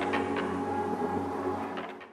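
Background music with steady held tones and light ticking percussion, fading out near the end.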